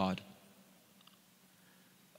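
A man's voice ends a word through the microphone, then near silence: quiet room tone with one faint small click about a second in.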